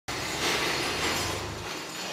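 A 1960 Chevrolet Corvair's rear-mounted air-cooled flat-six running as the car pulls in, a steady mechanical noise whose low part drops away shortly before the end.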